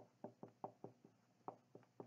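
Marker pen writing on a white board: a string of faint, short strokes and taps, about five in quick succession, a brief pause, then two more.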